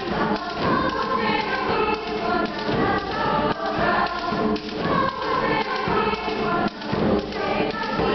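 A youth girls' choir singing together in full voice, with low thuds of the accompaniment beneath the voices.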